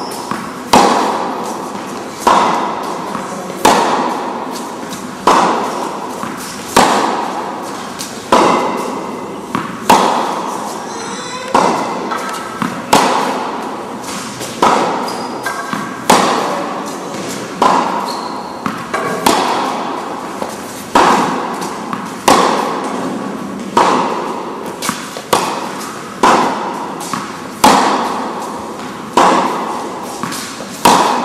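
Tennis balls struck by rackets in a steady rally, a hit about every second and a half, each hit echoing and dying away before the next.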